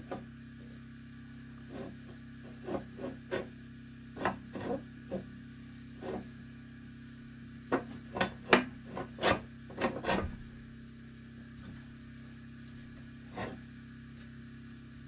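A cloth or pad scrubbing against a wood stove's metal door in short, irregular strokes, most of them bunched in the middle, over a steady low hum.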